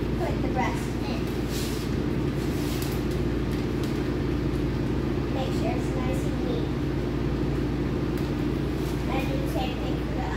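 A steady low machine hum runs throughout, with light crinkling and rustling as plastic film is stretched over foam meat trays. Faint voices are heard now and then.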